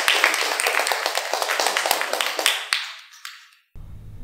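Audience applauding, thinning and fading out about three seconds in, followed by a low steady hum.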